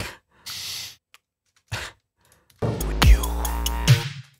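A short breathy laugh, then about two and a half seconds in the remix starts playing: electronic drums with a deep bass note, a kick that drops in pitch, and crisp cymbal hits.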